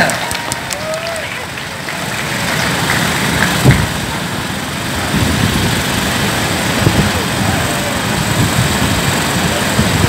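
Din of a large street-rally crowd: many voices blended into a steady murmur over street rumble. A sharp thump, the loudest sound, comes about four seconds in, and a smaller one follows near seven seconds.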